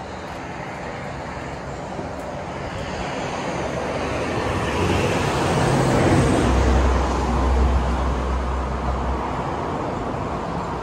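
A motor vehicle passing on the road below. Its noise builds over several seconds to a peak with a deep rumble about two-thirds of the way in, then eases off.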